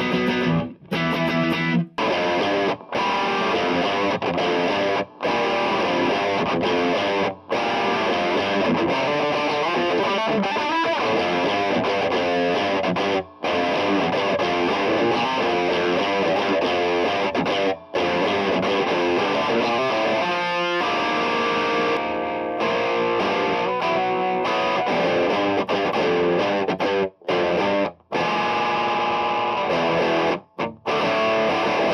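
Electric guitar played through an overdrive pedal stacked into a Boss DS-2 Turbo Distortion: dirty, driven riffs and chords, broken by brief stops between phrases.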